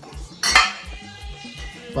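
Glass liquor bottles clinking against each other and the tiled altar top as they are lifted off, with one sharp clink about half a second in.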